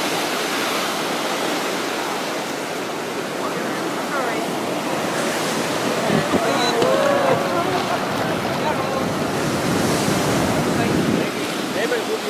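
Surf breaking and churning over rocks at the foot of a cliff: a steady rush of water, with wind on the microphone.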